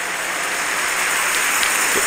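Congregation applauding: a dense, steady clapping that swells slightly.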